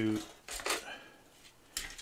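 Hard plastic model-kit sprues clattering as they are handled and shifted on a tabletop, with two sharp clacks, one about half a second in and one near the end.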